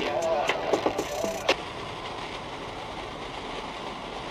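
Weak FM broadcast audio with a voice comes through static on a portable TEF6686 radio receiver and breaks off about a second and a half in. What follows is steady FM hiss: the receiver has been tuned off the station to a frequency with no signal.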